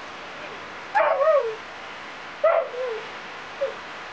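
Two short pitched animal calls about a second and a half apart, each wavering and then falling in pitch, with a brief fainter third call near the end.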